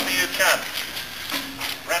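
A person talking, in short phrases with pauses.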